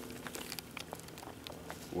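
Footsteps crunching over dry leaf litter and twigs, a scatter of small irregular crackles.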